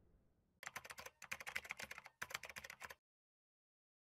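Keyboard-typing sound effect: rapid clicks in three short runs, starting about half a second in and ending about three seconds in.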